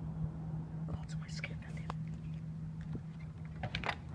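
Handling noise from a phone camera held in the hand: faint rustles and a few short clicks over a steady low hum.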